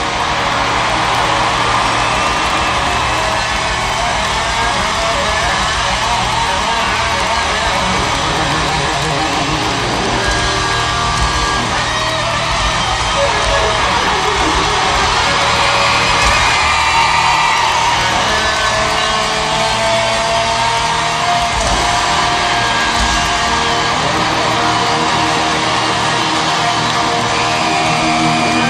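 Live rock band playing loud, with electric guitar, and an arena crowd yelling and whooping over the music.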